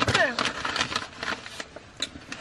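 Paper fast-food bag and sandwich wrapper rustling and crinkling in a run of short crackles as the sandwiches are handled, with a brief voice at the very start.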